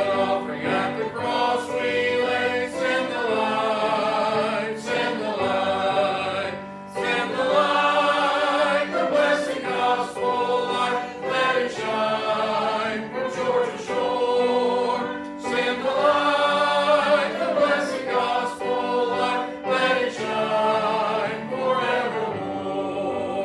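Church congregation singing a hymn together from the hymnal, in long sustained phrases, with piano accompaniment.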